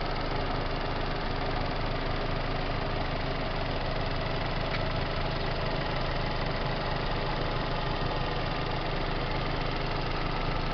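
A 2004 Vauxhall Astra convertible's Ecotec four-cylinder engine idling steadily, heard from just above the open engine bay.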